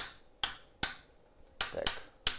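The frequency range rotary switch of an LO-70 valve oscilloscope is being turned step by step to raise the frequency. It gives four sharp detent clicks about half a second apart.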